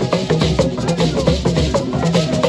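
Live traditional Ghanaian percussion ensemble: gourd rattles and drums playing a fast, dense, unbroken rhythm.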